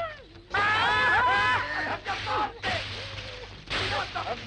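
A man's strained, high vocal squeals, then stretches of breathy hissing as he blows hard into a whistle that gives no proper whistle tone.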